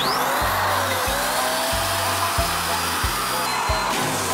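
Electric balloon pump switching on and blowing a steady rush of air to inflate a latex balloon, with children's music and a steady beat underneath.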